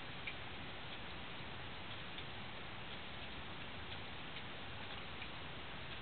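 Faint, irregular light clicks, several in a few seconds, over a steady hiss.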